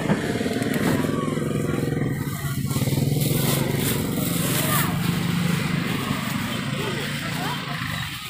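Motorcycle engine running close by, a steady low hum that grows louder about halfway through and eases off near the end, with voices in the background.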